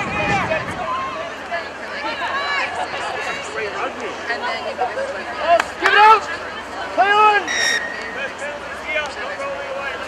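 Several voices shouting and calling out at once across an outdoor rugby pitch, the calls loudest about six to seven seconds in. A short, high, steady whistle blast sounds near eight seconds.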